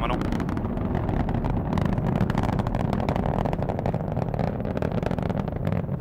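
Falcon 9 first stage's nine Merlin 1D engines firing in ascent: a steady deep rumble with a fast crackle.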